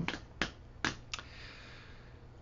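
Three short, faint mouth clicks about half a second apart in a pause in a man's talk, followed by a soft breath in.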